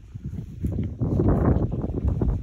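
Wind buffeting the phone's microphone: an irregular low rumble that grows louder about a second in.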